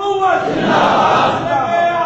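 A large crowd of listeners shouting religious slogans together in loud unison, in chanted phrases that swell and fall.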